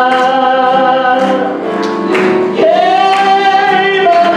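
Live gospel song: men singing long held notes, with keyboard and guitar accompaniment. One phrase ends about two seconds in and the next begins shortly after.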